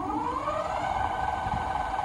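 HAOQI Rhino Scrambler e-bike's electric motor whining as it spins the lifted wheel up under full throttle. The pitch rises through the first second, then holds steady at the bike's freewheel top speed of about 35 mph.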